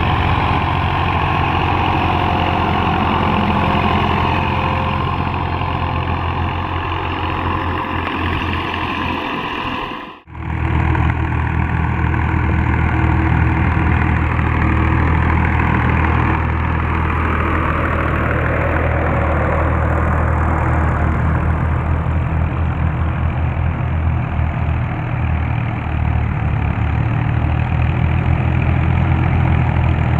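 Farm tractors' diesel engines running steadily while dragging levelling blades through loose sandy soil. The sound drops out briefly about ten seconds in, then the engines carry on.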